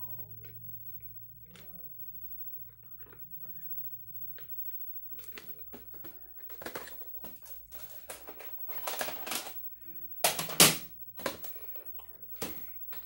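Plastic VHS clamshell case being handled, giving a run of sharp clicks and knocks that grow busier from about halfway and are loudest about ten seconds in, over a faint steady low hum.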